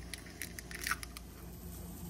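An egg being cracked by hand into a small glass bowl: a few faint clicks and crackles of shell in the first half, over a steady low hum.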